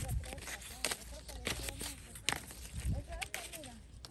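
Guava leaves and twigs rustling and crackling in short irregular clicks as a hand pushes through the branches, with faint voices in the background.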